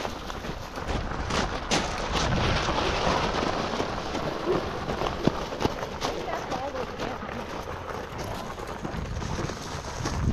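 Fat tyres of a Cyrusher XF900 e-bike rolling over loose gravel, with a continuous crackling crunch of stones.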